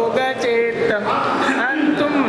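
Male voices chanting an arti hymn, with long held notes that slide between pitches.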